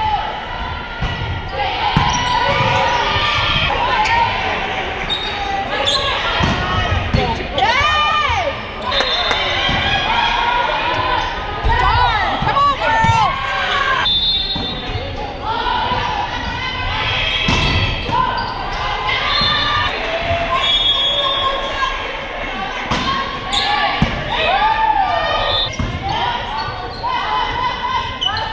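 Indoor volleyball play: sharp thuds of the ball being passed, set and hit, with players shouting and calling to each other, all echoing around the gymnasium.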